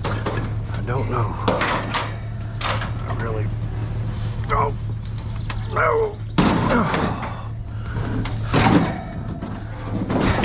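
A man grunts with effort while lifting an air-conditioner condenser unit. Its sheet-metal casing then scrapes and knocks onto a pickup truck's tailgate and bed, once about six seconds in and again a couple of seconds later.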